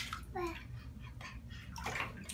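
Bathwater sloshing with small splashes in an infant tub as a baby moves a plastic toy through it. A brief baby vocalization comes about half a second in.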